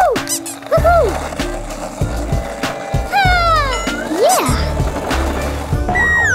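Cartoon sound effects of a skateboard rolling in stretches, with short whistle-like glides that rise and fall and a cluster of falling sweeps about three seconds in. Light background music plays underneath.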